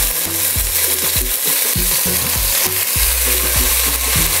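Onions, garlic and chicken pieces sizzling in hot cooking oil in an aluminium pot, stirred with a wooden spoon. The sizzle is steady, with low steady tones underneath.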